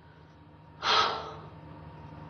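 A woman's single sharp gasp of breath about a second in, fading over about half a second, out of low room tone.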